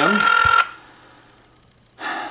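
Telephone ringback tone heard over the phone line while a dialed call waits to be answered: one steady electronic ring that ends about half a second in.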